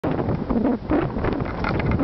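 Loud wind buffeting the microphone of a camera on a moving mountain bike, with irregular knocks and rattles from the bike running over a dirt trail.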